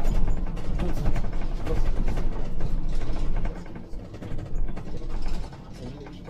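Scania Citywide articulated CNG bus heard from the driver's cab: a low engine and road rumble with a busy clatter of rattling, clicking interior fittings. The rumble drops away about three and a half seconds in.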